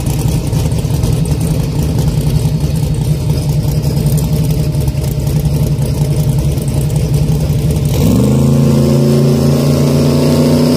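Fox-body Ford Mustang drag car's engine idling with a rough, choppy lope, then about eight seconds in the revs climb sharply and hold high and steady as it comes up to the starting line.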